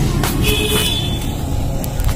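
Low, steady rumble of a road vehicle, with a brief high-pitched tone lasting about a second that starts about half a second in.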